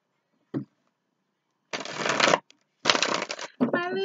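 A tarot deck being shuffled by hand: a light tap, then two quick shuffles of the cards, each under a second long. A woman's singsong voice starts near the end.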